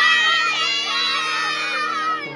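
A group of children shouting and cheering together in one long excited yell, loudest at the start and fading out just after two seconds.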